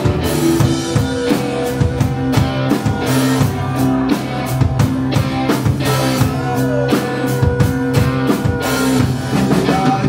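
A live rock band playing: drum kit beating a steady rhythm under sustained guitar chords from electric and acoustic guitars.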